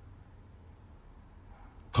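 A pause in a man's spoken monologue: faint room tone with a low hum, and a brief click near the end just before the voice resumes.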